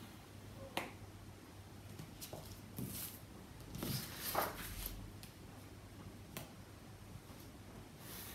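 Pencil drawing lines against a plastic ruler on card: a few sharp taps, about a second in and again near the end, with a brief rustle and slide of paper and ruler being shifted around the middle.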